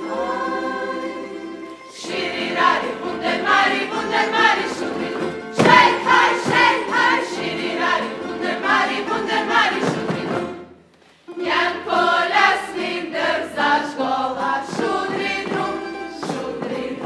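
Međimurje folk song sung in unison by a group of voices over tamburica accompaniment, with low bass notes plucked underneath. The music breaks off briefly about two-thirds of the way through, then starts again.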